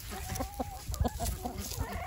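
Chickens clucking as they feed, with a short held call and several sharp taps as they peck food from a plastic plate.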